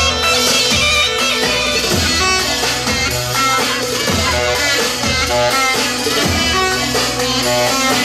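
Loud dance music with a steady beat and a melody on top.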